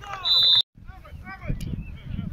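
A referee's whistle blows once, a short shrill note that is cut off abruptly. Shouting voices and crowd noise follow.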